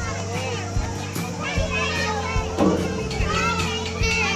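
Young children shouting and chattering as they play, with one louder shout a little past halfway. Under the voices runs music with sustained low tones and a beat of soft thumps a little under a second apart.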